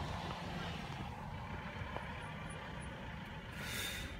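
Car cabin noise while driving: a steady low engine and road rumble, with a brief hissing swish near the end.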